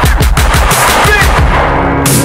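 A fast, continuous rattle of sharp bangs laid over a hip-hop beat.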